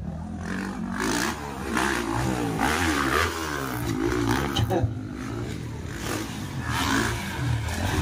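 Motocross dirt bike engines revving hard, their pitch rising and falling again and again as the riders throttle up and back off over the dirt track's jumps. At times more than one bike is heard at once.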